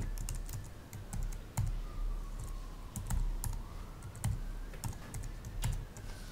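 Typing on a computer keyboard: irregular key clicks, with a low steady hum underneath.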